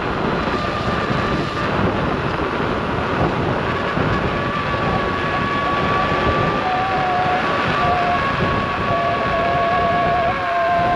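Veteran Lynx electric unicycle riding along a paved road: a steady rush of wind and tyre noise, with a thin high whine from the hub motor held steady throughout. A second, lower whine comes and goes in the second half.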